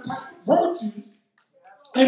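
A man's amplified voice preaching into a microphone in short, emphatic shouted bursts, breaking off for about a second before starting again.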